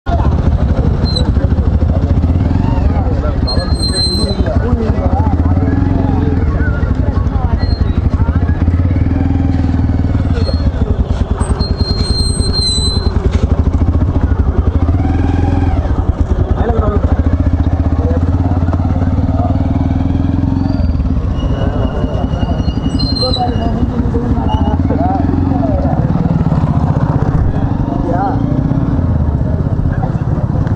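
A motorcycle engine running steadily, with men talking over it and a few short high-pitched whistles.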